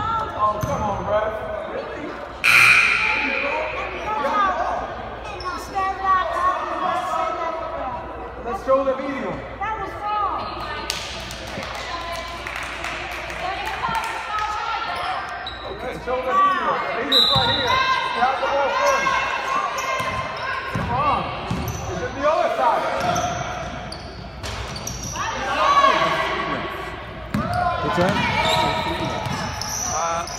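A basketball bouncing on a hardwood gym floor as a shooter dribbles at the free-throw line, while people around the court talk.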